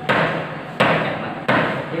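Steel crowbar jabbed against a strip of wooden wall trim to pry it from the wall, three sharp knocks about three-quarters of a second apart.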